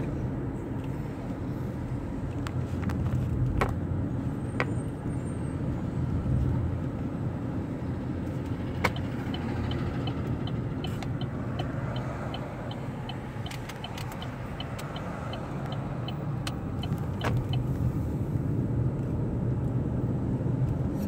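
Steady low rumble of road and engine noise inside a moving car. From about halfway through, a car's turn-signal indicator ticks regularly, about two to three ticks a second, for several seconds. A few isolated knocks are heard inside the car.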